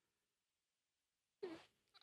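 Near silence: a pause in speech, with one brief voiced hum from a man about one and a half seconds in, just before talk resumes.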